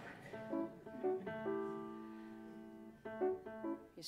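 Grand piano playing a short phrase: a few quick chords, then one chord held for about a second and a half, then a few more short notes near the end.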